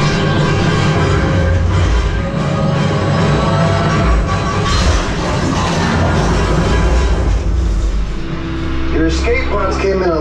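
Theme-park dark-ride soundtrack: loud music with sustained notes over a heavy low rumble of ride effects. About eight seconds in it settles into a steady low hum, with voices near the end.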